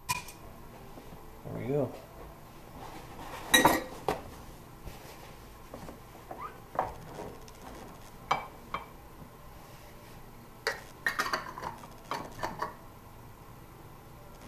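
Metal kitchen tongs clinking and knocking against a stoneware fermenting crock and a glass jar while sauerkraut is lifted out and packed. The strikes are scattered and irregular: the loudest knock comes about three and a half seconds in, and a quick run of clinks comes near the end.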